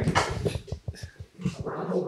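A dog whining and whimpering briefly, with a few light knocks.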